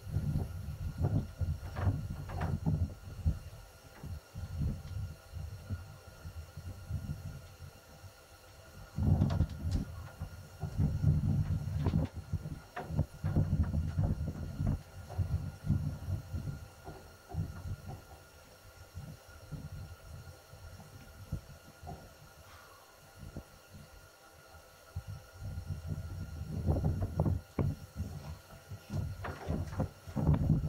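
Wind buffeting the microphone in uneven low rumbling gusts, heaviest for several seconds in the middle and again near the end, with a few faint knocks.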